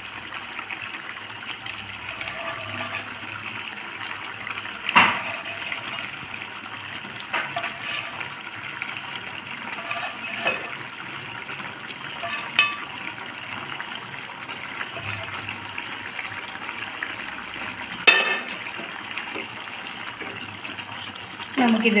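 Thick curry gravy simmering in a nonstick pan: a steady bubbling sizzle, broken by a few sharp knocks of something against the pan.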